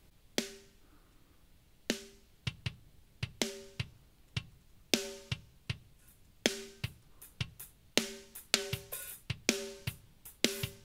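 A drum pattern of kick, snare and hi-hats heard only through a soloed, heavily compressed parallel drum bus. The hits come in a steady beat, and the snare rings on with a clear pitch after each stroke.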